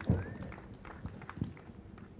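Handling noise from a podium gooseneck microphone being adjusted by hand: a soft thump just after the start, another knock about a second and a half in, and light rubbing clicks between them.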